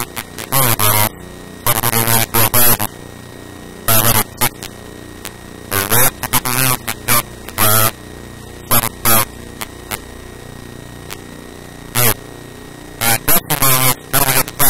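A man talking in short stretches with pauses, over a steady electrical mains hum.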